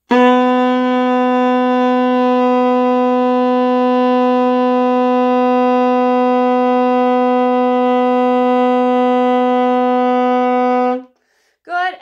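Alto saxophone holding one long, steady note, a written A played with the first two fingers down, as a long-tone exercise; it cuts off about eleven seconds in.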